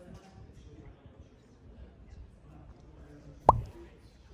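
A single short, sharp pop about three and a half seconds in, much louder than anything else, over faint background chatter.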